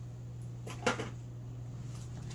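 A single short, light knock about a second in, as a small object is set down on a wooden tabletop, over a steady low hum.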